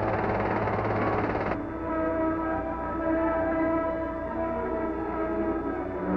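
Dense aircraft engine roar that cuts off about a second and a half in, giving way to a loud, sustained chord of held, horn-like tones from the dramatic film score.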